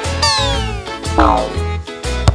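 Background music with a steady bass beat, over which a cartoon sound effect slides down in pitch, followed about a second later by a second, shorter downward slide.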